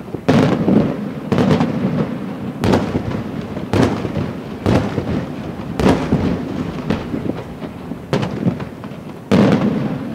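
Aerial firework shells bursting in the sky, a sharp bang roughly once a second, each trailing off in a low rumble.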